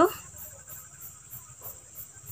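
Insects, cricket-like, chirping steadily in the background: a fast, even, high-pitched pulsing over a thin steady high tone.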